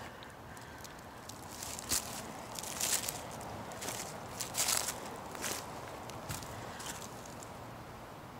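Footsteps on a forest floor of dry leaves, twigs and downed wood: a handful of irregular, soft rustling steps about a second apart, loudest around the middle.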